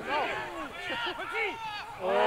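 Several voices shouting and calling at once across a football pitch during play, short overlapping cries that rise and fall in pitch.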